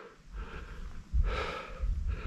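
A hiker breathing hard through the mouth: a faint breath about half a second in, then a longer, louder one, over a low rumble from wind or handling on the microphone.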